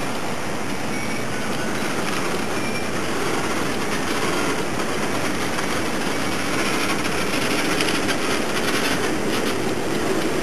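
Steam locomotive, tender and a wooden van rolling slowly past on the rails, their steel wheels clicking over the track. The clicking grows busier near the end.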